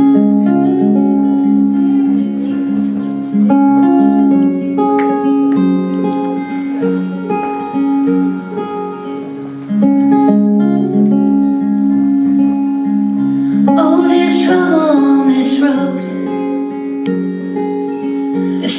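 Two acoustic guitars playing a song's intro, a repeating figure of separate notes; about fourteen seconds in, a woman starts singing over them.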